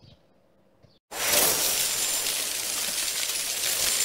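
Near silence, then about a second in a loud, steady hiss with a fine crackle starts abruptly: a spark or sparkler sound effect.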